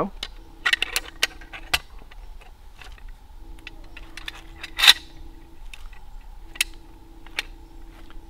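Metal pulley hardware clinking and clicking as it is handled and fitted onto a tree-anchor sling, in scattered sharp clicks with the loudest about five seconds in. A faint steady hum runs underneath.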